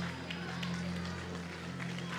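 A steady low hum under faint murmuring from a congregation during a pause in a sermon.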